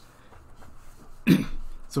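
A man clears his throat once, a short sharp sound about a second and a quarter in.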